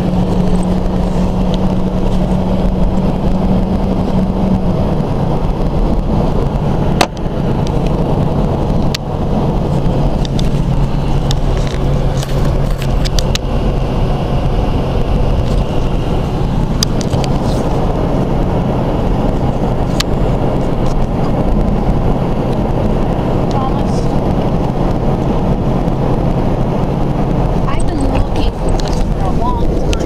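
Car driving, heard from inside the cabin: steady engine and road noise with a low hum that drops in pitch about five seconds in. A few sharp clicks break through the drone.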